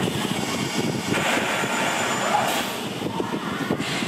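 Irish Rail diesel multiple unit running as it pulls slowly into the platform: a steady engine rumble with a rougher, louder stretch about a second in.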